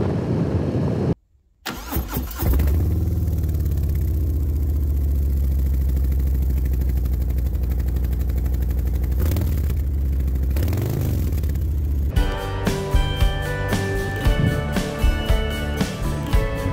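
Harley-Davidson Fat Boy's Milwaukee-Eight 114 V-twin starting up and idling through chrome Vance & Hines Big Radius 2-into-2 pipes, with a couple of throttle blips about two-thirds through. Guitar music takes over near the end.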